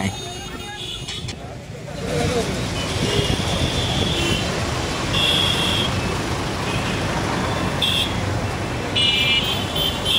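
Busy bus-stand traffic: engines and road noise with short, high horn toots several times. People's voices are also heard.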